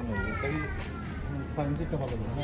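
A child's voice talking, its pitch falling slowly over about the first second, over a steady low hum.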